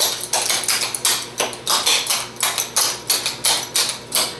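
Clogging shoe taps striking a hard floor in a quick, uneven run of double steps and rocks, about five to six taps a second, as a clogger dances a cowboy step.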